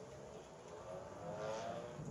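A faint passing vehicle, its hum slowly rising and growing louder through the second half.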